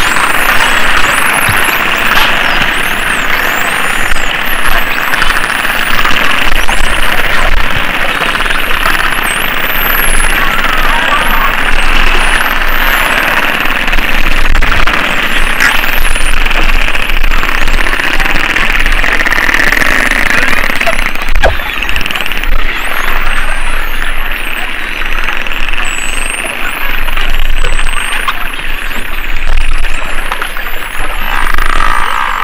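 Underwater sound of a spinner dolphin megapod: many whistles gliding up and down at once, over a dense crackle of clicks. The clicking thins out in the last third while the whistles carry on.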